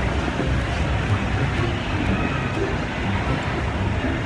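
Steady low rumbling background noise with a hiss above it, even throughout and with no distinct events.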